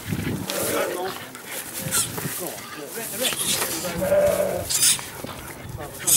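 A farm animal bleating: one drawn-out, steady call about four seconds in.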